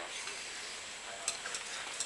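Hands working a rubber seal along an electrical wire: faint handling rustle over a steady hiss, with one small sharp click about a second and a quarter in and a few lighter ticks after it.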